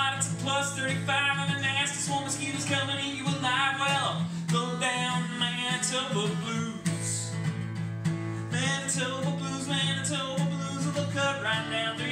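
A man strumming an acoustic guitar and singing a country blues song, with his voice dropping out for a few seconds mid-way while the guitar carries on.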